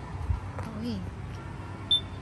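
A short, high-pitched tone near the end, over faint street noise, with a low thump early on.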